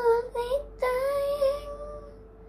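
A young boy singing: two short notes, then one long held note from about a second in.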